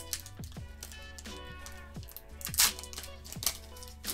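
Crinkling and tearing of a foil trading-card booster pack wrapper being opened by hand, loudest about two and a half seconds in, over soft background music.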